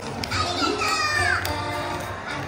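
Young children's high voices calling out over a stage show's music, which has a steady low beat.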